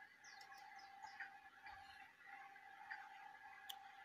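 Near silence: room tone with a faint steady hum and a few faint, short high-pitched chirps and small ticks.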